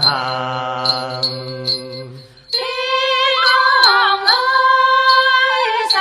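Tày folk song sung in the Tày language. A held, wavering note over a low drone fades away, and a new sung phrase begins about two and a half seconds in. Light, regular percussive ticks keep the beat.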